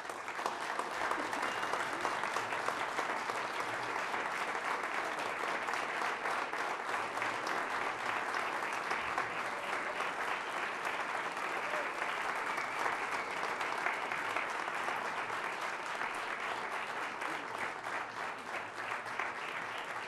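Audience applauding. The clapping breaks out all at once and carries on steadily.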